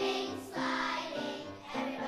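Children's choir of second graders singing together, holding notes that change about every half second.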